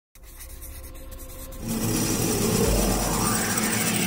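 Title-sequence sound design: faint scratchy pencil-sketching sounds, then at about a second and a half a loud swelling whoosh with rising sweeps and a deep boom about two and a half seconds in, as the intro builds toward music.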